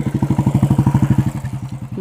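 A motor-driven engine running with a rapid, even pulsing that swells to its loudest in the middle and eases off near the end.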